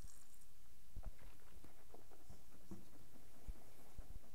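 Faint mouth sounds of a man sipping beer, holding it in his mouth and swallowing: small wet clicks scattered from about a second in, with a light knock near the end as the glass is set down on the wooden table.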